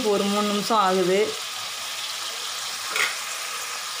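Crab gravy simmering in a steel pot, a steady sizzling hiss, with one short sharper sound about three seconds in.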